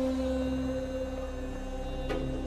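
A steady musical drone: a low held tone with a strong overtone an octave above, sustained without change.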